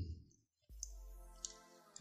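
Two faint clicks about half a second apart, from test-lead clips and a handheld component tester being handled, over a faint low steady buzz.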